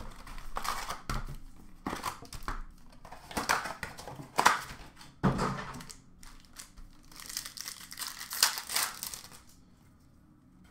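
Plastic wrap and foil trading-card packs crinkling and tearing as they are opened by hand, in irregular crackles that die away near the end.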